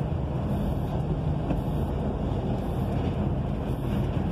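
Steady low drone of a truck's engine and tyres heard from inside the moving cab, with road noise from the wet highway.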